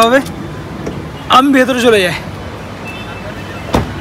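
A person's voice inside a car cabin, over a low steady hum, with one sharp click near the end.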